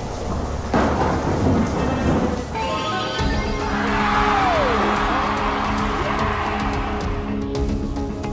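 Thunder sound effect, a rumble with sudden crashes, over the first three seconds. Then background music with held notes takes over, with a falling swoop about four seconds in.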